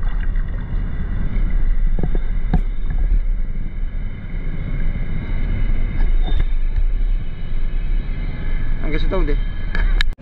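A steady low rumble of wind buffeting an action camera's microphone just above open water, with a faint steady high whine running under it. There are a few light knocks, and a short bit of voice near the end.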